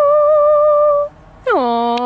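A young girl singing a cappella, holding one long note with a light vibrato that stops about a second in. Half a second later a second, lower voice comes in with a steep downward slide into a long held note.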